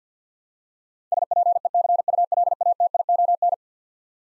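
Morse code sent as a single steady tone keyed on and off at 50 words per minute, a quick run of dits and dahs starting about a second in and lasting about two and a half seconds. It spells out the word "speculation", the repeat sending after the word is spoken.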